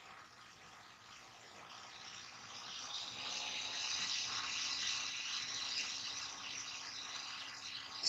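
A steady rushing hiss, like running water, that fades in about two seconds in and holds, with a faint low hum joining it.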